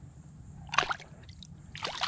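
Water splashing around a redfish held at the surface beside a boat, with a short sharp splash about a second in as the fish kicks its tail: it is reviving and ready to be released.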